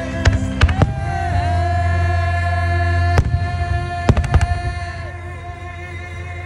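Aerial firework shells bursting with sharp bangs, a quick run of three near the start, one about three seconds in and another quick cluster about a second later, over music with sustained tones and a singing voice.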